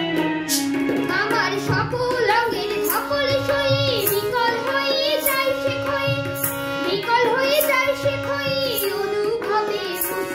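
A boy singing a Bengali folk-style song in a melodic, ornamented line, over instrumental accompaniment of held notes and regular hand-percussion strokes.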